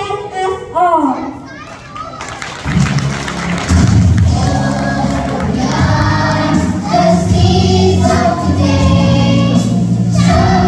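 A child's voice on a microphone, then about two and a half seconds in music with a steady bass begins and a group of young children sing along together.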